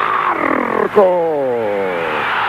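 A football TV commentator's long, drawn-out goal shout, one held call that slowly falls in pitch, over a cheering stadium crowd that swells near the end.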